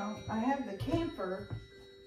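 A woman talking for about a second and a half, words too indistinct to make out, over a Christmas musical toy playing a bell-like carol tune in the background.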